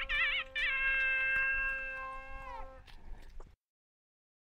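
Nadaswaram in raga Sankarabharanam playing a quick ornamented phrase with wavering pitch bends, then holding a long closing note over a steady drone. The note fades and stops, and the recording cuts to silence about three and a half seconds in.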